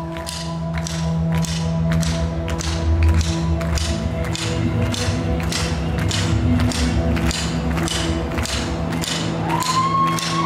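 Rock band playing: the drum kit hits a steady beat of about two strokes a second over long held guitar and bass notes, and a note slides up near the end.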